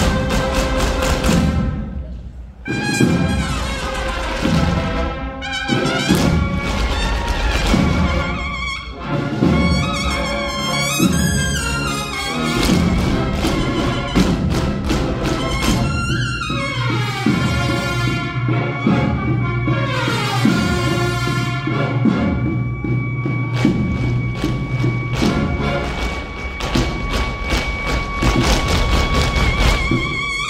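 Cornet and drum band playing a Holy Week processional march: cornet lines over repeated drum strokes, with one long held cornet note through the last several seconds.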